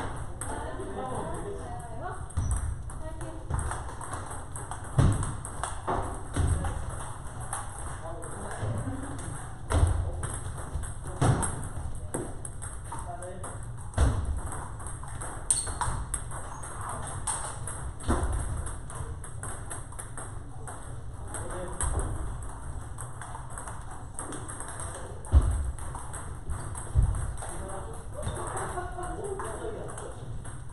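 Table tennis rallies: the celluloid-type ball clicking off paddles and tables in a quick irregular patter, from the near table and others around it in a large hall. Heavier thuds come every few seconds, and voices chatter faintly in the background.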